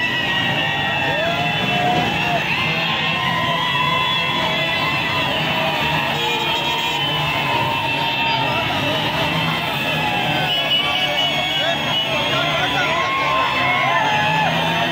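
A dense street crowd shouting and cheering over loud music, a steady, unbroken din of many voices.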